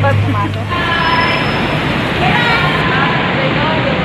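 Loud, steady vehicle and traffic noise echoing in a parking garage, with a low hum that stops about a second in and voices talking faintly over it.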